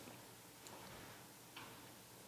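Near silence: room tone with two faint clicks about a second apart.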